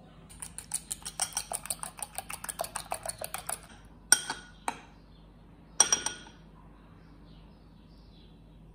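A metal spoon clinking rapidly against a ceramic bowl of beaten egg, about eight light strikes a second for some three seconds, as a vegetable ball is turned in the egg. A few single ringing taps of the spoon on the bowl follow.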